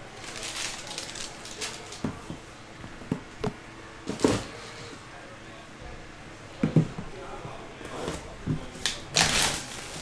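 Sealed trading-card boxes handled on a table: a scattering of light knocks and taps as they are set down and moved, then a short crinkle of plastic shrink wrap near the end.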